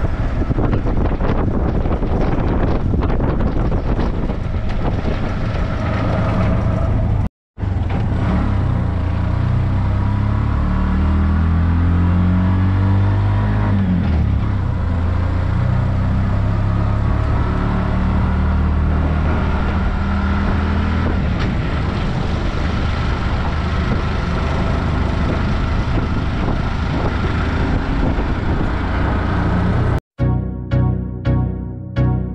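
Small engine of a motorized tricycle running under way, its pitch rising and falling with throttle and gear changes, with road and wind noise throughout. The sound cuts out for a moment about seven seconds in.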